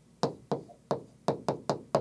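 A digital pen tip tapping and clicking against the glass of a large touchscreen display while letters are written by hand: about eight short, sharp taps at an uneven pace.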